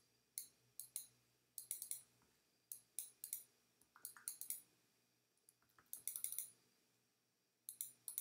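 Faint computer mouse clicks in irregular quick groups, roughly one group a second with short pauses, as a brush is dabbed over a photo in Photoshop.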